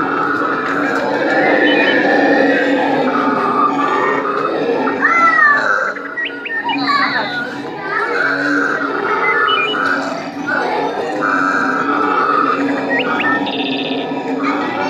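Background hubbub of visitors' voices, children among them, with a few high squeals about five to seven seconds in.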